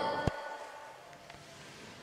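Quiet room tone of a large hard-floored lobby: the echo of a called "hello?" dies away at the start, with a single bump about a quarter second in.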